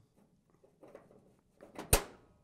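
Faint handling rustles, then one sharp click near the end: steel automatic-transmission parts (reaction shaft and planetary gear set) knocking together as they are handled on a workbench.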